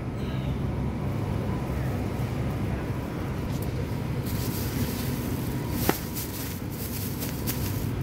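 Thin plastic produce bag rustling and crinkling as a package of meat is bagged, starting about halfway through, with one sharp click near six seconds. A steady low store hum runs underneath.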